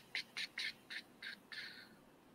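Faint chirping: a quick run of about ten short, high chirps, about four a second, the last one drawn out a little longer.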